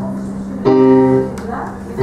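Casio electronic keyboard played with a piano sound: a low chord is held, then a louder chord is struck about two-thirds of a second in and left to fade.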